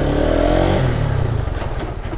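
Lifan KPT 150's single-cylinder, fuel-injected engine pulling the motorcycle away, its pitch rising over the first second, then running steadily at low speed.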